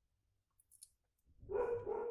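A woman's voice speaking Russian. It starts about a second and a half in, after a near-silent gap broken only by a brief faint hiss.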